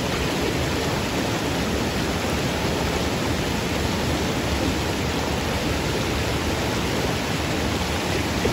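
Small waterfall cascading over boulders into a stream pool: a steady, even rush of falling water.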